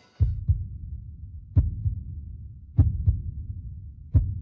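Heartbeat sound effect in the breakdown of an electronic dance track: three double thumps, lub-dub, about a second and a quarter apart, over a low rumble.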